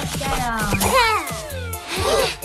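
Children's cartoon music with a high, cat-like voice that rises and then slides down in pitch about a second in.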